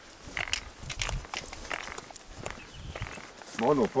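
Hikers' footsteps and trekking poles clicking on a grassy, stony mountain trail, an irregular scatter of sharp ticks and scuffs. A man's voice starts near the end.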